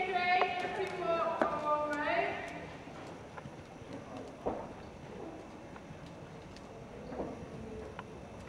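Horse's hoofbeats on a soft indoor arena surface, faint, with a few sharper knocks scattered through. For the first two seconds or so a person's voice calls out over them.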